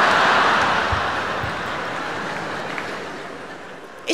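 Large arena audience laughing and clapping after a punchline. It is loudest at the start and dies away over about four seconds.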